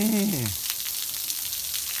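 Outdoor shower running: water spraying from an overhead pipe shower head and falling onto the ground in a steady hiss.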